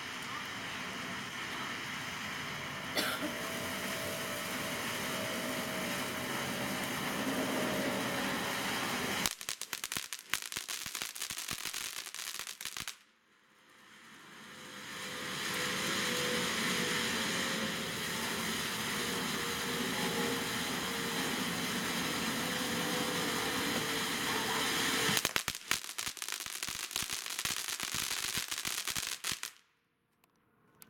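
Phantom Fireworks Golden Pine Forest fountain spraying gold sparks with a steady hiss, breaking into rapid crackling about nine seconds in and again near the end. It dies down briefly around the middle, builds back up, and cuts out just before the end.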